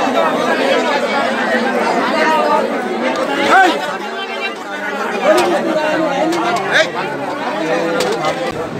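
Many people talking at once: a steady babble of overlapping crowd chatter.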